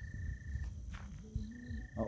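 An insect, likely a cricket, trilling in short bursts of about half a second, twice, over a low rumble.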